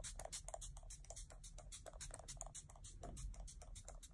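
Faint, rapid series of short spritzes from a MAC Fix+ pump mist spray, sprayed repeatedly onto the face.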